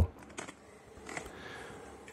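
Quiet room noise with two faint short clicks.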